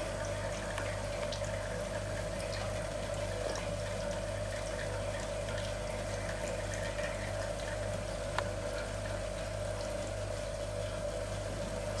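Thin stream of freshly distilled alcohol trickling from a still's output tube into a hydrometer test cylinder, over a steady low hum from the running still.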